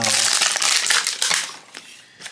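Tight plastic wrapper crackling and crinkling as it is peeled off a plastic toy ball, loud for the first second and a half, then fading away.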